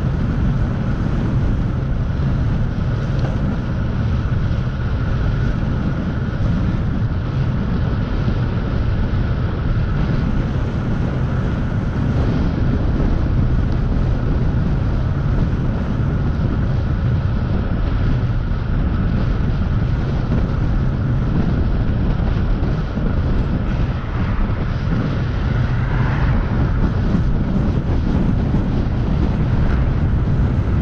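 Steady wind rushing over the microphone of a camera on a moving road bicycle, a low even rumble, with a faint steady high tone running underneath.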